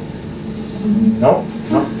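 Speech: a voice answering a student with 'nope, mm-hmm, no, no' over a steady room hum.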